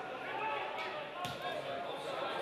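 Voices on the pitch with two sharp thuds of a football being kicked, a little under a second in and again about half a second later.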